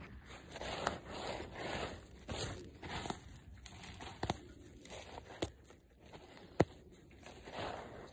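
Hand trowel scraping and digging through loose garden soil to cut a furrow, with a scatter of short clicks as the blade meets bits of debris. The sharpest click comes late on.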